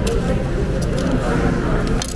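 Steady background chatter of diners' voices in a busy dining room, with a few brief rustles of a paper napkin being pulled from a silverware roll.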